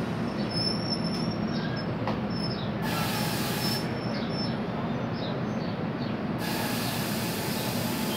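Bi-level commuter rail coaches rolling slowly past on the rails as the train pulls into the station, a steady rumble with thin high wheel squeals. Two bursts of hiss come in, about three seconds in and again from about six and a half seconds on.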